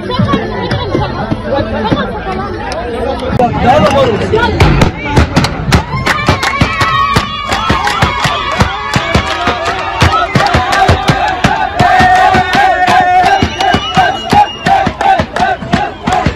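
A crowd of young people singing and chanting together to a fast beat of hand-struck frame drums, with clapping. The drum strikes come thick and fast from about four seconds in, and the voices hold a long sung note near the end.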